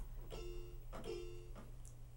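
Casio electronic keyboard playing two short chords, the second about two-thirds of a second after the first.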